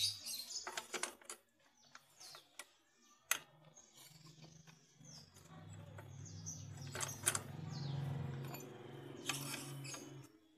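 Scattered metal clicks and clinks of steel tools, a homemade rod-and-bar clutch holder and locking pliers, knocking against a scooter's CVT clutch bell as they are fitted, over a low hum that sets in a few seconds in. Faint bird chirps sound in the background.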